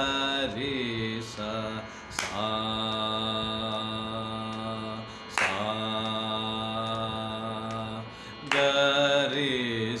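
A man singing a Carnatic mandra sthayi (lower-octave) varisai exercise in sargam syllables, mostly long held notes of about three seconds each with short breaks between, over a steady drone.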